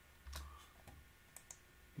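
Faint clicks from computer keyboard keys and a mouse: one firmer click about a third of a second in, then a few light ticks.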